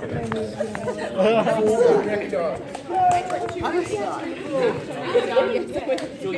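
Overlapping chatter of a group of people talking at once, with no single voice standing out.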